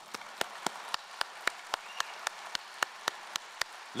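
Audience applauding, with one set of nearby claps standing out about four times a second over the steady clapping of the crowd.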